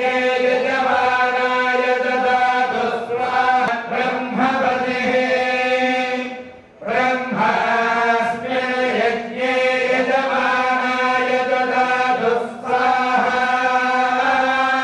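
A group of voices chanting a mantra in long, steady held tones, pausing briefly for breath about seven seconds in and again near the end.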